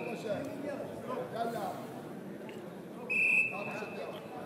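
A referee's whistle blown once, a single steady shrill blast of just under a second, about three seconds in, over a murmur of voices in the hall.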